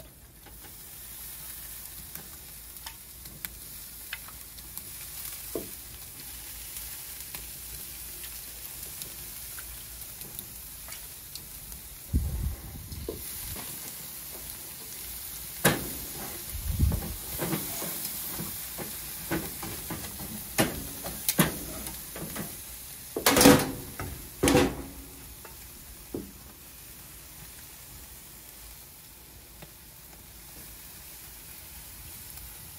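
Pork ribs sizzling on a kettle grill grate over direct charcoal heat as mop sauce is brushed on, a steady hiss. Over the second half come scattered clinks and knocks of metal tongs and the sauce pot against the grate as the ribs are turned, loudest a little past the middle.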